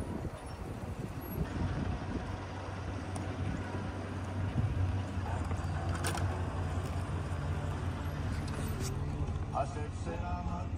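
A vehicle engine running with a steady low hum that grows a little louder about halfway through, with a brief sharp click about six seconds in.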